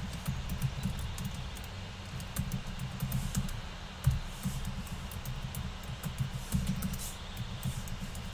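Light, irregular clicks of typing on a computer keyboard over a steady low rumble.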